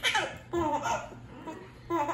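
Baby laughing in several short bursts of giggles.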